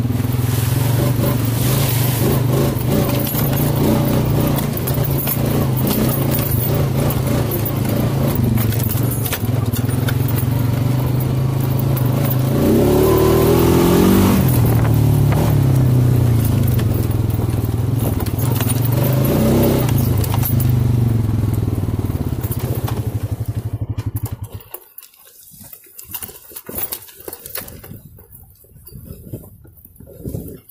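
ATV engine running steadily as it is ridden, revving up briefly about halfway through and again a few seconds later. The engine sound stops abruptly near the end, leaving only faint, scattered noises.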